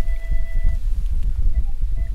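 Uneven low rumble of wind buffeting an outdoor microphone, with two faint held tones that fade out within the first second or so.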